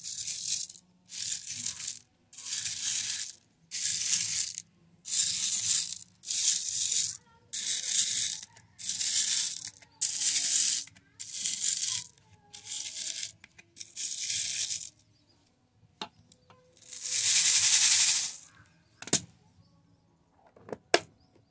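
A fingertip stirring through small beads and pearls in a clear plastic organizer box, a rattling swish about once a second. Near the end comes one longer swish, then a sharp click.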